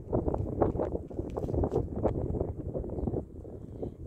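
Wind buffeting the microphone in uneven gusts, a rough rumbling noise with irregular crackles.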